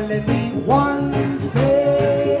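Live reggae band playing, with electric guitar over a steady beat of about two strokes a second and long held notes.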